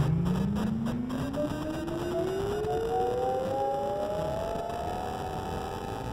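Two layered theremin voices. The lower one glides slowly and smoothly upward across the whole stretch until it meets a higher tone that wavers in and out before it holds steady. The overall level fades a little.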